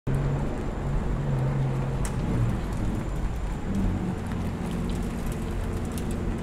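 Pagani supercar engine running at idle: a steady low rumble whose pitch shifts a little, with a few faint ticks over it.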